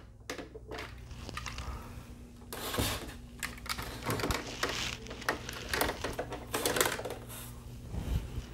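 Hands handling and repositioning plastic Transformers action figures on a hard display floor: irregular light clicks, small plastic knocks and rustles, over a steady low hum.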